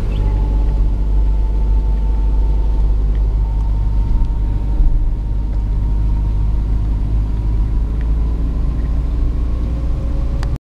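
Steady low rumble of a car driving along a road, heard from inside the cabin, with a faint thin whine above it.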